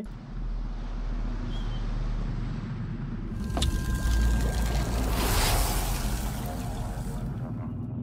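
Drama trailer sound design: a deep, steady rumble with a swelling rush of water. A sharp hit comes about three and a half seconds in, and the rush builds, peaks and fades by about seven seconds.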